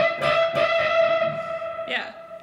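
A single electric guitar note, a string bend from the A minor blues scale high on the neck, picked once and held ringing at a steady pitch for about two seconds.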